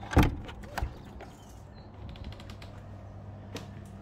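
A door's metal lever handle and latch clunking as the door is opened: one loud clunk at the start, a second knock a little under a second in, then a few lighter clicks, with one more click near the end.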